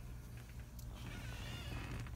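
Steady low hum of a home aquarium's pump, with a high, wavering cry coming in about halfway through.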